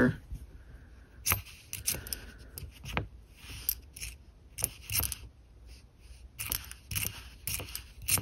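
Copper and zinc Lincoln cents being picked through by hand on a cloth mat: scattered light clicks and clinks as the coins are slid and set against one another, about a dozen spread irregularly.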